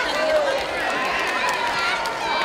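Men's voices calling out over arena crowd noise, some calls drawn out.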